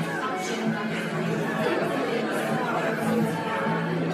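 Indistinct chatter of several people talking, with background music playing: the ambience of a busy café.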